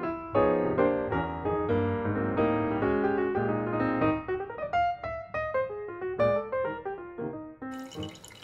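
Background piano music, its notes growing sparser in the second half. Just before the end, the hiss of a running tap comes in.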